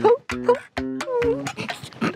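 Dog-like whimpering, a few short whines, over background music with short plucked notes.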